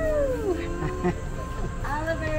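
Background music with a high-pitched voice calling out twice, each call rising and then falling in pitch.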